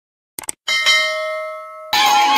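Subscribe-animation sound effects: a quick double mouse click, then a bell chime of several steady tones that rings out and fades for about a second before being cut off near the end.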